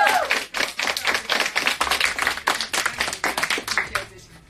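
A small group of people applauding: many quick, uneven hand claps that stop near the end. A sung jingle's last held note dies away at the very start.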